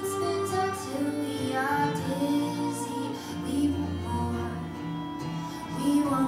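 A woman singing a slow song live, accompanied by a bowed violin and cello in a small acoustic string arrangement.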